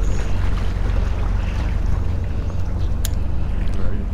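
Wind buffeting the microphone as a steady low rumble and rush, with one sharp click about three seconds in.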